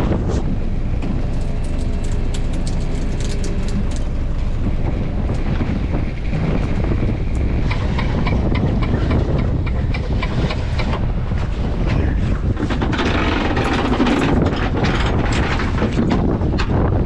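Steady low rumble of a small fishing boat under way, with wind buffeting the microphone. Scattered light clicks and rattles come from the longline gear being handled at the reel.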